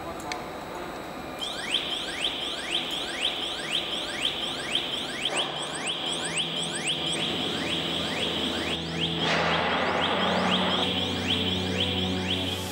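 A quick, even series of rising electronic chirps, about three a second, stopping about nine seconds in, over a low steady hum that comes in partway through.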